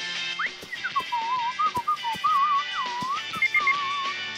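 A whistled tune with a wobbling vibrato and pitch slides, over light backing music with ticking percussion. Three short high beeps come near the end.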